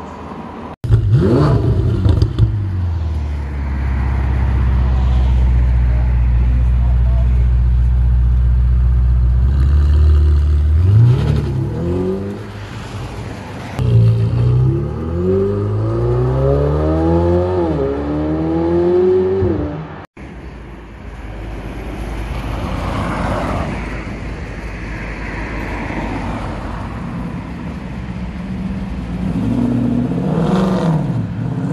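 Ferrari 488 Pista's twin-turbo V8 coming in suddenly and loudly about a second in, then idling steadily, then revving hard as the car pulls away, the pitch climbing and dropping back at each upshift. After a sudden break about two-thirds of the way through, a quieter stretch of car engine and road sound follows.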